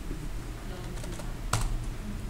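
Computer keyboard keystrokes: a few light taps, then one sharper key press about one and a half seconds in, as a length of 100 is typed and entered.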